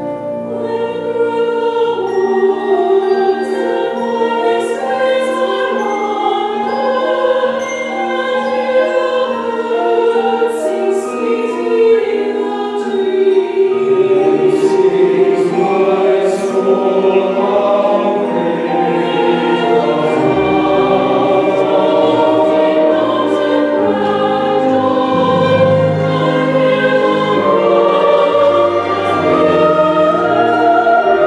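Mixed church choir singing an anthem in parts, accompanied by a small string ensemble. The voices hold long notes, with deeper bass lines entering partway through.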